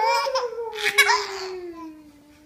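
A 4½-month-old baby laughing as he is tickled: one long laugh that starts at once, with a second burst about a second in, its pitch slowly falling as it fades near the end.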